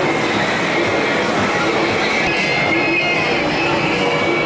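Steady mechanical rumble of a moving fairground ride, with a thin high whine that grows stronger about halfway through.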